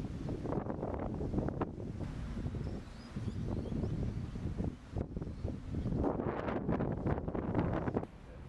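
Gusty wind buffeting the microphone, a fluctuating low rumble.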